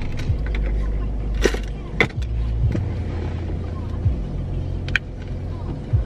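A car's engine idling, a steady low hum heard inside the cabin. Over it come a handful of light clicks and rustles from small things being handled in the driver's lap.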